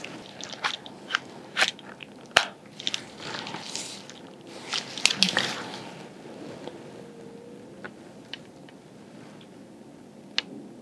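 Gloved hands handling small handheld examination instruments: scattered sharp clicks and crinkly rustling, busiest over the first six seconds, then quieter.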